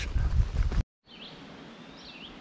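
Low rumbling wind and handling noise on a hand-held camera's microphone, cut off abruptly a little under halfway through. Then quiet woodland ambience with two short bird chirps.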